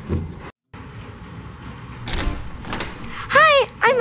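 A last knock on a plastic toy-house door right at the start, then the door being opened, with a swell of scraping noise and a low thud about two seconds in.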